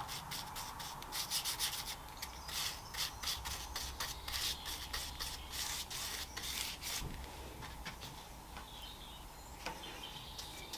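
A stiff paintbrush, hardened with dried shellac, scrubbing French polish onto a card carriage side in quick short strokes, its bristles scratching on the card. The strokes thin out after about seven seconds.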